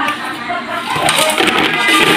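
Indistinct speech: voices talking, with no clear non-speech sound standing out.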